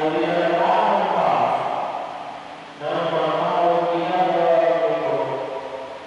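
A man's voice chanting liturgical text into a microphone in two long phrases, each held on a nearly steady pitch with a short break between them.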